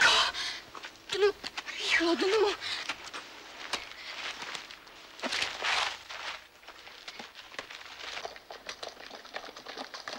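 Brief urgent voices at the start, then scuffling and rustling of leaves and clothing as a wounded man is dragged into bushes, with many scattered clicks and crackles.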